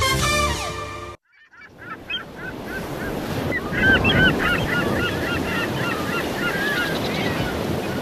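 Theme music stops about a second in. After a short gap come many short, repeated gull calls over a steady wash of ocean surf, a beach-sound bed under the closing logo.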